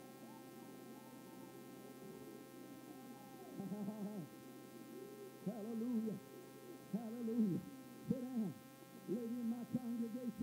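Drawn-out vocal calls, each rising and falling in pitch, a few at a time from about three seconds in and coming closer together near the end, over a steady hum.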